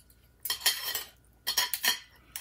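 Metal spoon and fork clinking and scraping against a plate while scooping food. The sound comes in two short bursts, the first about half a second in and the second near the end.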